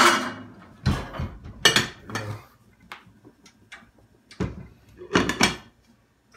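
Kitchen handling sounds: about five separate knocks and clatters of cookware and utensils, with a quiet gap in the middle.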